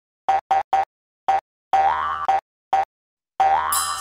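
Cartoon logo-intro sound effects: short bouncy pitched boings, three quick ones, then single ones with gaps between, two longer notes that slide upward, and a bright sparkling shimmer joining in near the end.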